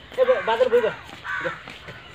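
Crows cawing: a run of short calls through most of the first second, then another call or two near the middle.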